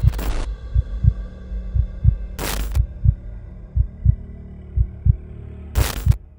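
Trailer sound design: a heartbeat-like double bass thump about once a second over a low hum, cut by three short bursts of static-like noise, at the start, about two and a half seconds in, and near the end.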